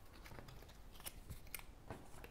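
Faint clicks and light slides of tarot cards being picked up off a table and gathered into a stack, with a few sharp taps in the second half.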